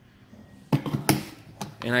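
Hard plastic air intake hose handled and squeezed by hand, giving two sharp plastic clicks about a second in and a few lighter ticks after them.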